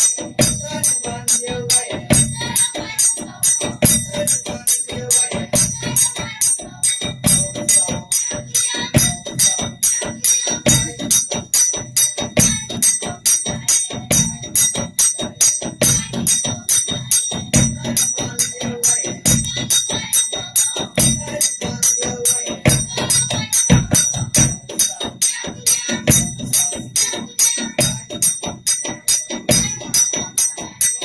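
Folk-dance music played on a drum and metallic percussion: a quick, even beat of several strokes a second, deeper beats recurring in a regular pattern, and a steady high ringing from bells or cymbals over it.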